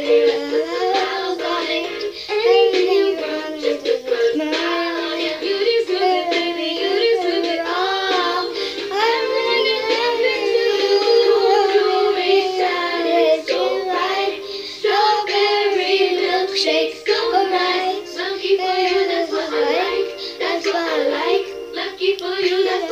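A young girl singing, her voice gliding up and down through long held notes with only short breaks.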